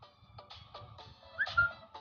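Background music of short plucked-sounding notes, with a brief high rising squeak about one and a half seconds in.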